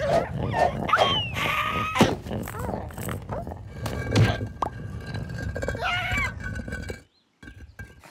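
Animated cartoon soundtrack: many short, squeaky, gliding character vocalizations and sound effects over music, with a sharp hit about two seconds in. The sound drops out suddenly about a second before the end.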